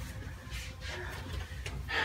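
Quiet room tone: a low steady hum with faint rustling of movement.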